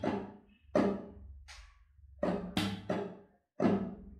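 Nylon-string classical guitar strummed in a flamenco-style rhythm: a series of sharp finger strokes and upstrokes with a percussive slap on the top, each chord ringing briefly. A short gap falls in the middle, then three quick strokes come in a row, and one more follows near the end.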